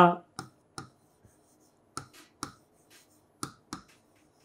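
Stylus tip tapping on the glass of an interactive display while Kannada letters are written by hand: six sharp clicks in three pairs, one at the start of each pen stroke.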